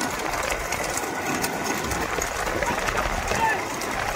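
Bullock cart race: voices shouting over the running of the bullocks and carts on a paved road, a dense, steady din.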